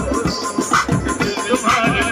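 Loud baraat band music with a heavy, steady beat.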